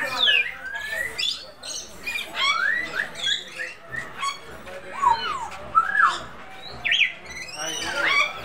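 A group of captive parrots (parakeets, sun conures and African greys) calling: a busy, overlapping run of squawks, whistles and short screeches that slide up and down in pitch.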